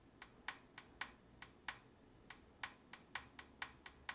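Small plastic push-buttons on night vision binoculars clicking as they are pressed over and over to scroll through an on-screen menu. The clicks come a few per second, about fifteen in all, with a short pause near the middle.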